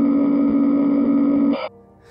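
A loud, steady electronic tone held on one low pitch, with a harsh edge of overtones. It starts abruptly and cuts off suddenly after about a second and a half.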